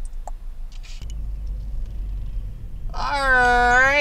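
Low, steady rumble of a car driving, heard inside the cabin, starting about a second in after a couple of faint clicks. About three seconds in, a woman's voice draws out a long "y'all" on a held pitch that falls away at the end.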